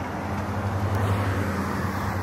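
Steady road-traffic noise outdoors: a vehicle engine's low hum under a wash of tyre and road noise, swelling slightly around the middle.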